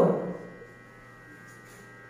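Steady electrical mains hum, a constant low drone with a thin buzzing edge, after a brief vocal sound from a woman dies away at the very start.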